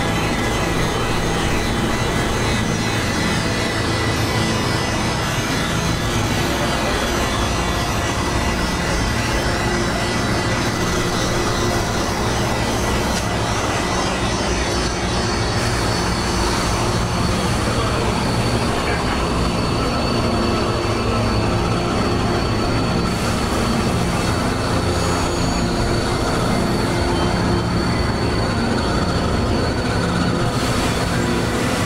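Experimental electronic noise music: a dense, unbroken synthesizer drone of rumbling, hissing noise with faint sustained tones held inside it. A thin high tone joins about halfway through.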